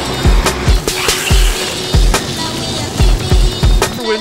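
Electronic dub music track with a deep, repeating kick-drum beat and crisp ticks over a dense hiss.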